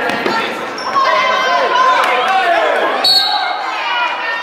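A basketball bouncing on a hardwood gym floor as it is dribbled, with shouting voices echoing in the gym.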